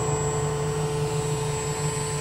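High-temperature 3D printer's heated-chamber fans running: a steady drone with a low hum and a constant thin whine over it.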